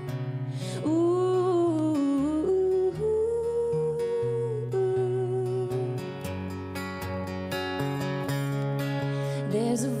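A woman singing a held, wordless vocal phrase over her own acoustic guitar chords. The voice drops out a little under halfway through, leaving the guitar chords, and comes back in near the end.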